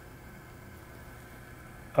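Faint, steady hiss of a running hydronic test rig: water flowing through the piping and a half-inch ball valve, with the circulator pump running.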